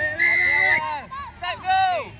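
A rugby referee's whistle blown once, a short steady blast, over players' high-pitched shouts. More loud shouting follows near the end.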